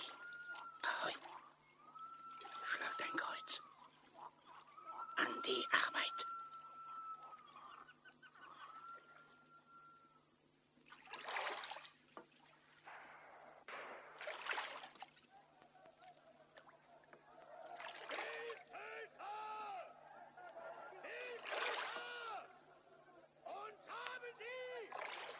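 Canoe paddles dipping and splashing in lake water every few seconds. Long, steady whistle-like calls sound in the first ten seconds, and a run of short rising-and-falling calls fills the second half.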